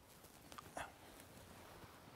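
Near silence, with a faint, brief animal call just before a second in.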